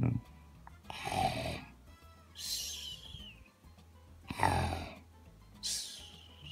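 A person making snore-like breathing sounds: two slow rounds, each a rough lower breath followed by a higher hissing one.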